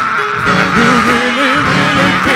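Men's gospel choir singing held notes with a wavering vibrato, over keyboard accompaniment.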